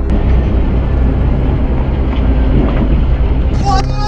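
A four-wheel drive rolling over on a muddy slope, heard from inside the cab as a loud, continuous rumbling noise. A voice cries out briefly near the end, rising and then falling.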